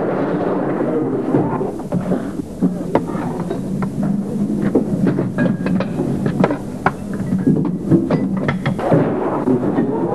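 Clatter of cutlery and crockery in a busy dining hall: many sharp, irregular clinks and knocks over a steady din of diners.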